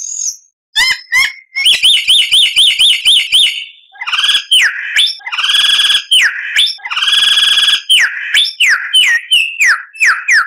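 A songbird singing a loud, varied song: a fast run of repeated up-and-down whistled notes, then two long buzzy held notes, then a string of quick down-slurred whistles, about three a second.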